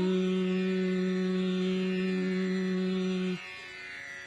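Female Carnatic vocalist holding one long, steady note in raga Mohanakalyani at the end of a phrase. She cuts it off sharply about three and a half seconds in, leaving a soft steady drone underneath.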